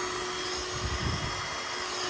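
Vacuum running steadily with a constant hum, drawing air and yellow jackets through a smooth hose into a live-capture jug trap. A brief low rumble about a second in.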